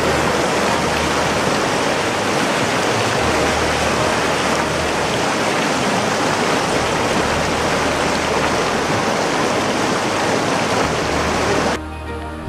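Loud, steady rushing of a fast, muddy river tumbling over rocks. It cuts off abruptly near the end.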